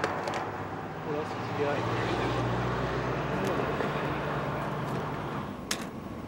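Steady vehicle and street background noise with a low hum, a couple of brief faint voices, and a few sharp clicks at the start and near the end.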